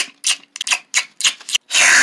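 Crinkling and rustling of tape-covered paper cutout puppets as they are handled and moved against a paper sheet, in several short irregular bursts.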